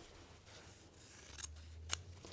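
Scissors cutting through a strip of batik quilting fabric: quiet snipping, with two short sharp snips near the end.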